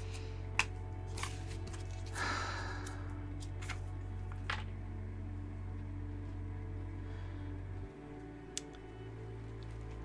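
Tarot cards handled on a wooden table: a few light taps and clicks, and a brief card swish about two seconds in. Quiet background music with a low steady tone underneath, which shifts a little near the end.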